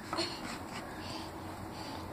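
Faint handling sounds of a glass beer bottle being pulled out of a cardboard six-pack carton: a soft short knock just after the start, then quiet room tone.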